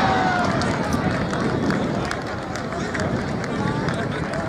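Scattered calls and shouts from footballers and onlookers on the pitch, over steady background noise.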